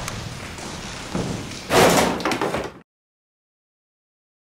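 A door slammed hard, a loud crash about two seconds in that rattles for a moment before the sound cuts off suddenly.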